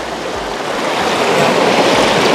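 River water rushing over boulders in shallow white-water rapids: a steady rushing noise that gets a little louder about half a second in.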